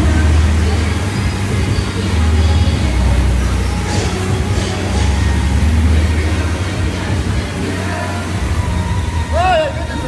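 Air bike's fan wheel whirring hard under a sprint, with a steady rushing noise that swells and eases with the pedalling. Background music plays underneath, and a short vocal cry comes near the end.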